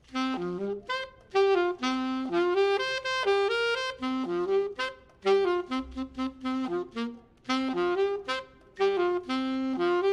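Unaccompanied jazz saxophone line that starts abruptly, played in short quick phrases broken by brief gaps.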